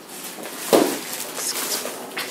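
A sudden thump a little under a second in, followed by about a second of rustling: handling noise as the camera is swung around.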